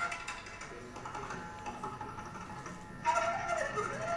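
Indian classical jugalbandi: a bansuri flute melody over tabla strokes, with the flute sliding down in pitch near the end.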